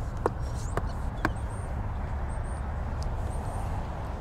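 Steady low outdoor background noise with no distinct source, broken by a few faint clicks in the first second and a half.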